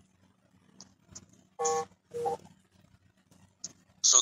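Two short electronic beeps about half a second apart, the second one stepping up in pitch, with a few faint clicks around them.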